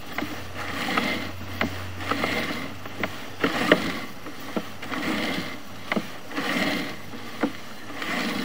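Sewer inspection camera's push cable being pulled back out of the line hand over hand: a rhythmic swish about every second and a half, with sharp clicks between. A low hum runs through the first few seconds.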